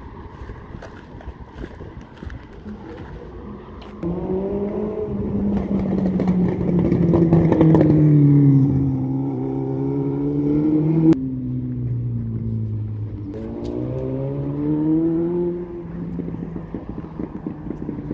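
A motor vehicle engine on the street, loud from about four seconds in, its pitch sliding down and then up as it slows and speeds up, with a sudden drop in pitch partway through. It falls away a couple of seconds before the end, leaving street noise.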